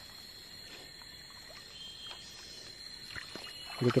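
Hands scooping gravel and water out of a shallow flooded hole in a stream bed, giving soft, faint splashing and sloshing.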